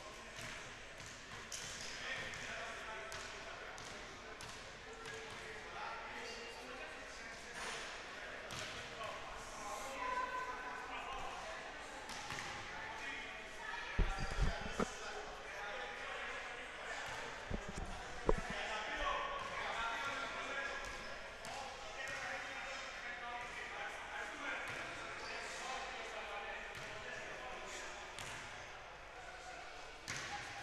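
Indistinct chatter of players and officials in a gym, with a basketball bouncing on the wooden court a few times about halfway through.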